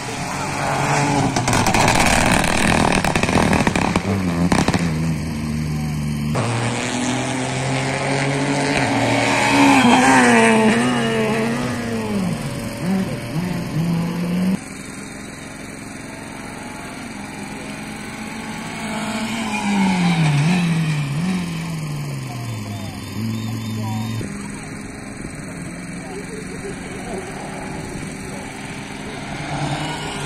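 Rally cars at racing speed on a tarmac stage, their engines revving hard, the pitch stepping up through the gears and falling away with braking and downshifts. The sound cuts off suddenly about halfway, and another car is then heard revving up and down through the gears as it comes through.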